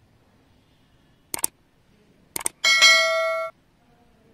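Two quick double clicks from a smartphone about a second apart, then a bright electronic ding lasting under a second that cuts off abruptly, as the Android 13 easter-egg clock is turned.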